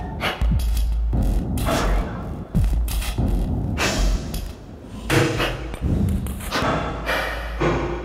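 Electronic music for a dance routine, with heavy deep bass and repeated sharp, hard-hitting percussive accents, played loud in a large hall. The music thins and fades down near the end.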